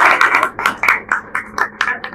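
Applause from a small group dying down: the dense clapping thins within the first half second into a few separate, evenly spaced handclaps, about four a second, which stop at the end.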